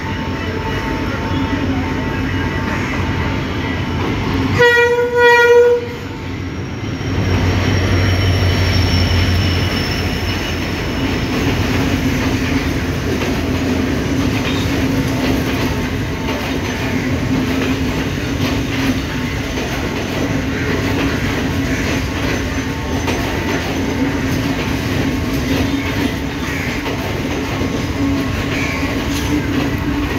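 Sri Lanka Railways M11 diesel locomotive approaching with a steady rumble and sounding one horn blast of just over a second, about five seconds in. Its engine then passes close below with a deep hum, and the passenger coaches follow, rolling past steadily with wheel clatter on the rails.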